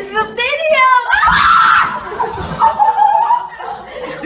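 Several women laughing and shrieking. The loudest part is a shrill burst lasting close to a second, starting about a second in.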